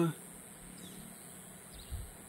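Faint outdoor background with a steady high hiss, just after a man's voice trails off at the very start.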